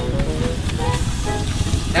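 Water from a garden hose hissing and sizzling as it hits still-hot lava in a stone fire pit, throwing up steam. A few faint held notes of background music sit under it.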